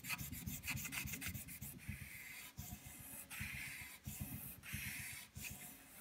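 Aluminum oxide sandpaper rubbed quickly back and forth by hand over a carbon bicycle rim's brake track, a faint rapid scratching that stops just before the end. It is scraping off gummed-up brake pad material and ridges to leave the braking surface smooth.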